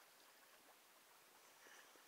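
Near silence: a faint hiss, with a soft splash near the end as a swimmer's hands stroke forward through the water.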